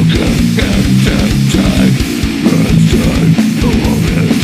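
Death metal / beatdown track: heavily distorted electric guitar and bass chugging a riff over fast, dense drum hits.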